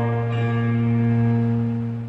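Men's choir holding the final chord of a hymn, one steady sustained chord that begins to fade away near the end.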